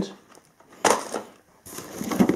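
Cardboard packs of fireworks rockets dropped into a cardboard box: a brief scuff about a second in, then packaging rustling near the end as the next item is picked up.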